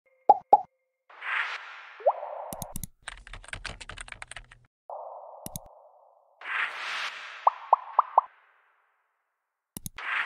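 Animated user-interface sound effects: two quick pops, then a soft whoosh with a short rising blip. About three seconds in comes a fast run of keyboard-typing clicks, followed by whooshes, single sharp mouse-click sounds and four quick rising pops near the eight-second mark.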